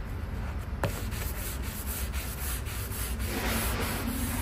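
An applicator pad rubbing oil stain across a bare Japanese elm board in repeated strokes, a steady scrubbing sound. There is a single sharp click just under a second in.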